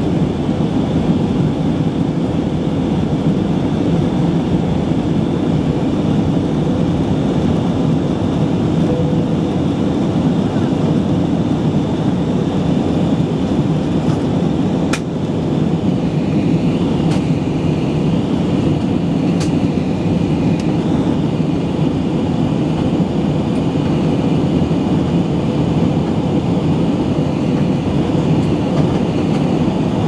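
Steady cabin noise of an airliner in flight: jet engines and rushing air, heard from inside the cabin. A few faint sharp clicks come about halfway through.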